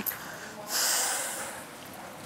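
A single breathy exhale, like a huff before answering, starting about half a second in and fading out within a second.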